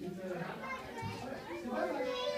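Indistinct background chatter of several voices, children's among them, with no clear words.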